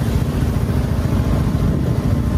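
Motorcycle engine running at a steady road speed, a rapid low beat of exhaust pulses under wind noise on the microphone.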